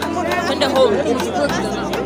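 Chatter: voices talking close by over the hubbub of a crowd.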